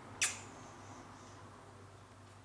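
A single short, sharp high-pitched squeak about a quarter second in, followed by a faint high trailing tone, over a low steady hum.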